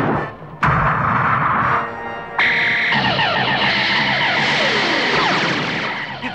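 Cartoon sci-fi laser turrets firing. A sudden blast starts just over half a second in, and from about two and a half seconds a sustained electric buzz carries many rapid falling-pitch zaps, all over background music.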